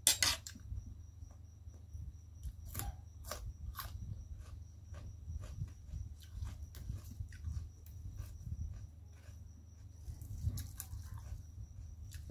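Close-miked chewing and mouth noises, with irregular crunches and clicks as raw greens and papaya salad are eaten and leaves are picked off their stems. The loudest crunch comes right at the start. A steady low hum and a faint high whine run underneath.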